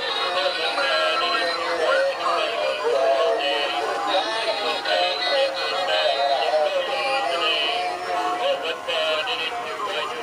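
Battery-operated animated Santa Claus figurines playing Christmas songs with electronic singing through small speakers. The sound is thin and tinny, with little bass, and several tunes seem to overlap in a jumble.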